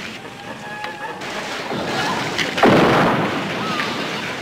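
An explosion about two-thirds of the way through: a sudden, loud rushing blast that fades over about a second, over a steady noisy background.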